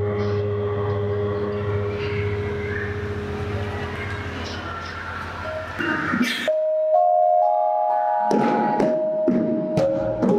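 Javanese gamelan: struck bronze keys and gongs ring on together, with a deep gong hum underneath, slowly fading over about six seconds. After a sharp stroke and a moment where the low hum is gone, bright bronze notes are struck one after another as a new passage begins.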